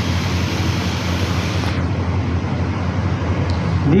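A loud, steady rushing noise with a constant low hum underneath. The highest part of the hiss drops away a little under two seconds in.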